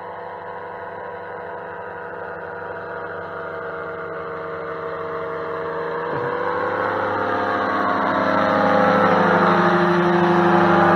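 Powered parachute trike's engine and propeller droning at full power as the aircraft climbs toward and over the listener, growing steadily louder and loudest near the end as it passes low overhead.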